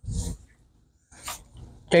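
A man's breath noises in a pause between words: a short breathy exhale, then a quick hissy sniff or inhale a little past the middle.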